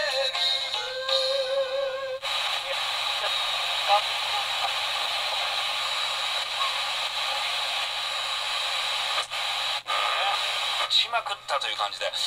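Pocket AM/FM radio playing through its small built-in speaker, thin and without bass. A station with music and singing cuts out about two seconds in as the dial is tuned away, leaving a steady hiss of static between stations. Near the end a voice from another station comes in.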